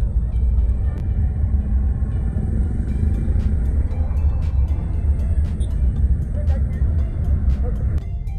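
Steady low rumble of a car heard from inside the cabin as it moves through traffic. Faint music with a regular beat comes in about three seconds in.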